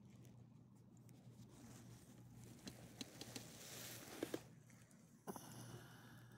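Faint scuffing and a few light clicks from a small dog walking on a leash over a concrete sidewalk, the sharpest clicks coming as a close pair about four seconds in, over a steady low hum.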